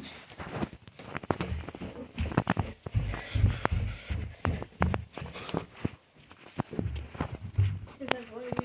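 Footsteps going down a carpeted staircase: a run of irregular heavy thuds, with small knocks and rustles between them.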